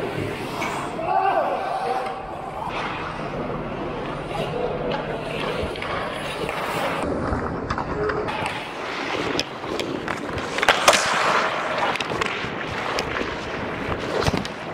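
Ice hockey play close to the goal: skate blades scraping and carving the ice, with sticks clacking. There is a cluster of sharp knocks from sticks or the puck about ten to eleven seconds in.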